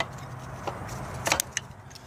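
A few light clicks and taps from a loose throttle body being handled in the engine bay, the sharpest pair about a second and a half in, over a faint steady low hum.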